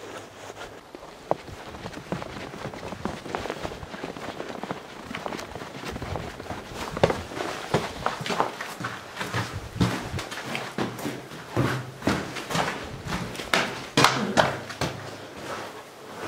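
Footsteps of a person walking over snow-covered brick paving and into a brick watchtower. The steps grow louder and more frequent from about halfway, with the loudest knocks near the end.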